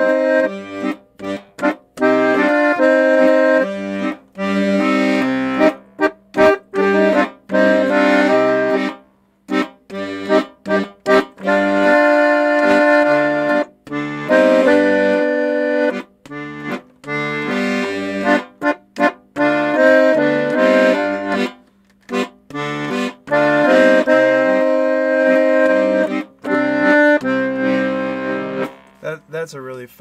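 Petosa piano accordion playing a Latin rumba/bolero figure in C minor: the left-hand Stradella bass alternates root and fifth bass notes with chord buttons, moving to G7, under a right-hand melody. It is played in phrases with a few short breaks.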